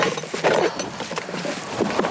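Hollow plastic deer decoy knocking and scraping as it is lifted and its leg pieces are pulled apart, with dry leaves crunching and rustling underfoot.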